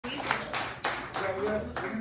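A short run of hand claps, about three a second, with a voice talking over them in the second half.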